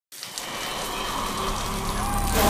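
Steady rain falling, with water streaming and dripping off a roof edge. It starts abruptly at the very beginning and holds at an even level.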